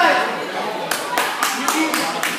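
Hands clapping: about six quick claps in a row, starting about a second in, over a man's voice at the very start.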